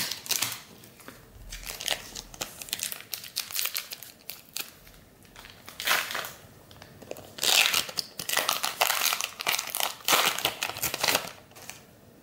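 Plastic-foil wrapper of a Panini Mosaic trading-card pack crinkling and tearing as it is opened by hand. The crinkling comes in irregular bursts, loudest in the second half.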